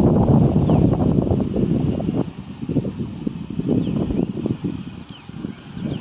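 Wind buffeting an outdoor microphone: an uneven low rumble, strongest for the first two seconds and then easing off.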